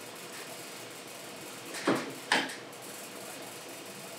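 Quiet room tone with two short clicks about half a second apart, from a wrench pushed against the shaft of a cut-away conical rotor motor.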